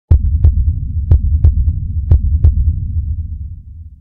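Heartbeat sound effect: three double thumps about a second apart over a low rumble that fades out toward the end.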